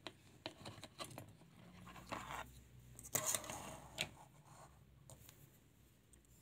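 Faint clicks and scrapes of small plastic and metal parts as a Samsung Galaxy S7 Edge motherboard is worked free of the phone's frame and lifted out, with a louder scraping rustle about three seconds in.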